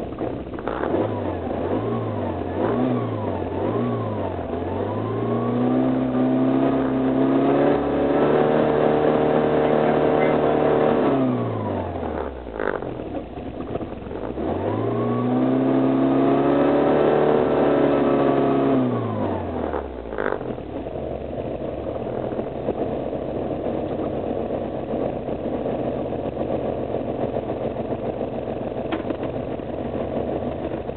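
Pinzgauer's air-cooled petrol engine on EFI, still in warmup mode with fast idle and warmup enrichment. It is blipped three times, then twice run up and held high toward redline, with a sharp click as the revs fall away each time, before settling back to a steady idle.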